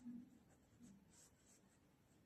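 Faint scratching of a ballpoint pen writing on paper, in a few short strokes.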